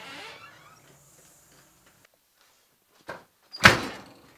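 A door slammed shut: a short knock about three seconds in, then a loud bang as the door closes near the end.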